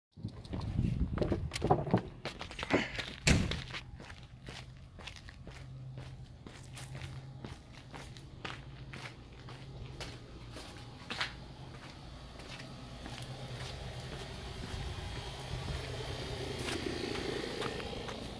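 An aluminium storm door's latch and frame clunking and knocking as the door is opened, then footsteps walking at a steady pace of about two steps a second, with a low steady hum under them.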